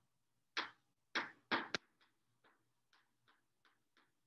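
Chalk writing on a blackboard: four short strokes in the first two seconds, then a run of fainter ticks a few tenths of a second apart.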